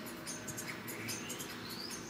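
Quiet room tone through a lapel microphone, with faint high flickers and a faint thin whistle that rises steadily in pitch over about a second and a half, starting a little before the middle.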